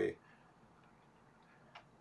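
Near silence: room tone, broken once by a single faint click shortly before the end.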